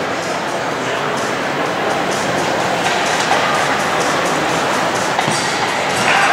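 Steady murmur of a crowd and general noise in a large indoor fieldhouse, with no single sound standing out.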